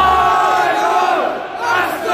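Football crowd in a stadium shouting and cheering, with one man yelling close to the microphone over it.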